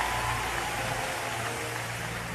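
Large congregation applauding in a big hall, the clapping slowly dying away.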